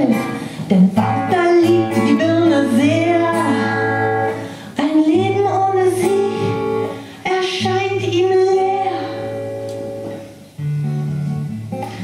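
Live solo singing with a strummed acoustic guitar: a vocal melody of long held notes with vibrato over steady low guitar chords, broken by brief pauses between phrases.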